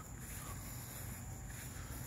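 Faint outdoor garden ambience with a steady, high-pitched insect drone of crickets.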